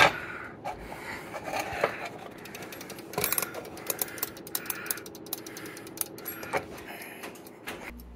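White mechanical wind-up kitchen timer being turned and set, its clockwork clicking and ticking in quick, uneven clicks over a faint steady hum.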